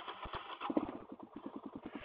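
Suzuki DR-Z400's single-cylinder four-stroke engine idling at a standstill, a quick, even pulse of about ten beats a second.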